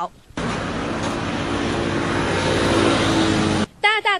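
Street traffic: a motor vehicle running close by, heard as a steady wash of engine and road noise that ends in an abrupt cut.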